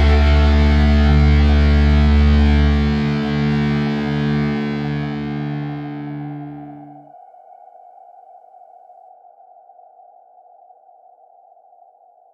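Closing chord of a rock song, held and ringing on guitar over deep bass. The low bass drops away about three seconds in, and the chord cuts off about seven seconds in, leaving a faint steady hiss.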